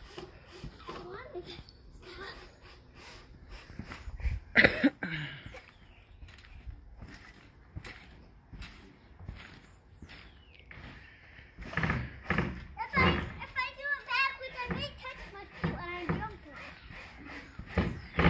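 A young child's voice, wordless calling and babbling, with a loud short shout about four and a half seconds in and a longer run of sing-song vocalizing from about twelve seconds. Light repeated thumps of small feet on a trampoline mat run underneath.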